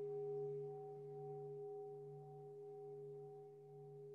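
A struck meditation bell ringing out: a faint, low tone with a few higher overtones, slowly fading.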